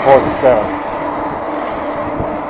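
Riding noise of a fat-tyre electric mountain bike on a paved cycle path: a steady rush of wind and tyre noise on the handlebar camera's microphone, with a steady low hum underneath.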